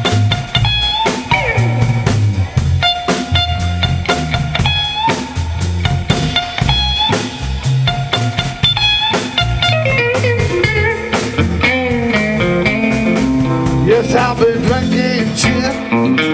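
Live blues band playing an instrumental passage on electric guitar, bass guitar and drum kit. A short riff repeats about every two seconds, then a busier lead line with bent notes takes over in the second half.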